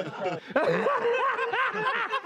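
A man laughing hard, a run of quick high 'ha' pulses that rise and fall in pitch about four times a second, with a short catch of breath just before the half-second mark.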